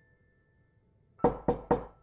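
Three quick, loud knocks on a door, a quarter second apart, coming just past the middle, over faint sustained piano notes.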